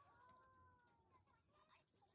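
Near silence, with one faint drawn-out pitched cry lasting about a second that rises slightly, then sinks in pitch as it fades.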